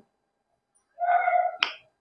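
After about a second of silence, a short high-pitched voice sound, then one sharp click.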